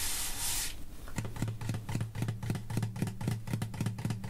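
Hands rubbing across an acoustic guitar and its soft padded gig bag lining, then a run of small quick clicks with a low steady note ringing underneath from about a second in.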